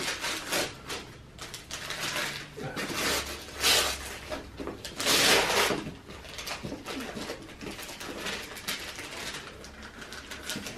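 Gift wrapping paper being ripped and rustled off a present, with two louder tears around the middle.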